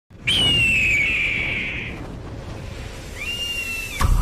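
Logo-intro sound effect: a high whistling tone that comes in suddenly and slides slowly downward for under two seconds, then a second, shorter high tone near the end, over a low rumble.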